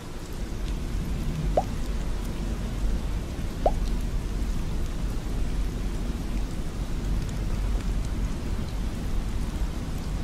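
Steady rain with a low rumble underneath. Two short rising blips sound about two seconds apart in the first four seconds.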